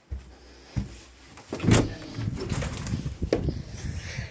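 A wooden door being opened: the handle and latch click, then a sharp knock about a second and a half in. Uneven rumbling noise follows as the door swings open to the outside.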